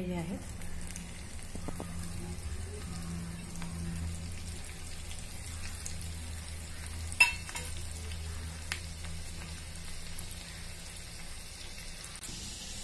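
Finely chopped garlic frying in hot ghee with mustard seeds in a small tadka pan: a steady sizzle over a low hum, broken by one sharp click or pop about seven seconds in and a fainter one near nine seconds.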